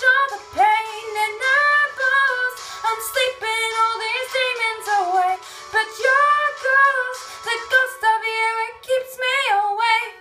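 A young woman singing solo, holding and sliding between notes in a long wordless run.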